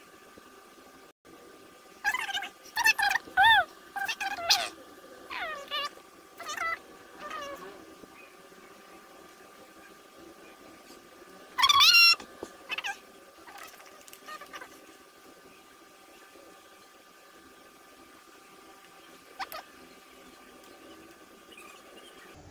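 A cat meowing: a run of short meows between about two and eight seconds in, then one louder meow about twelve seconds in and a faint one near the end.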